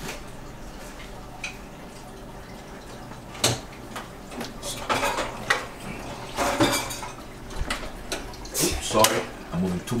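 Kitchen clatter: a handful of separate sharp clinks and knocks of metal utensils against cookware and bowls being handled, spread through the second half.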